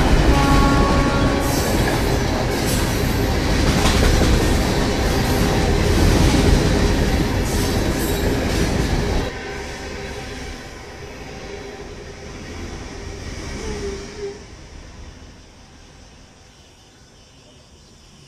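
A passing train's loud rumble and clatter, cut off abruptly about nine seconds in. A much quieter background follows and fades away.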